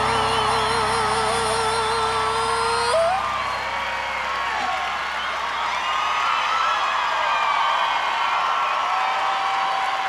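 A woman's voice holds a long sung note with a wide vibrato, flipping upward as it ends about three seconds in, while the low accompaniment under it fades out. After that a large audience cheers, with many whoops and yells.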